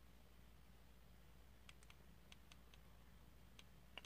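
Near silence broken by a few faint, short clicks in the second half: the buttons of a Cartel 160W box mod being pressed to step through its menu.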